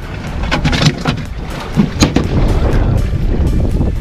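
Wind buffeting the microphone over the low rumble of a boat's outboard motor, with a few knocks and one sharp bang about two seconds in as a hinged deck fish-box lid is handled.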